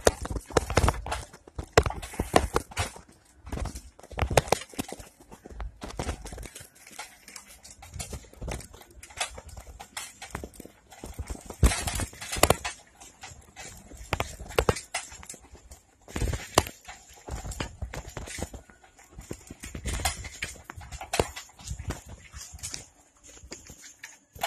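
Bicycle and its front basket rattling and clattering as it is ridden over paving, in irregular knocks of uneven rhythm. A faint, high, steady whine rises near the end.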